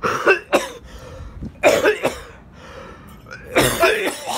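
A man coughing in fits: a quick cluster of coughs at the start, another about 1.7 s in, and a harder run near the end.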